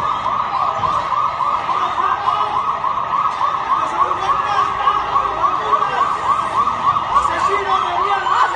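Police vehicle siren on a fast yelp, sweeping up and down about four times a second without a break.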